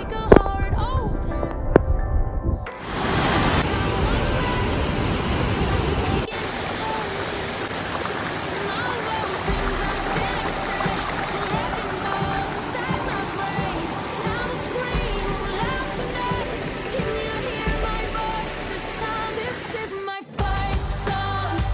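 A song with singing plays for the first few seconds, then cuts to the steady rush of a shallow creek and its small waterfall.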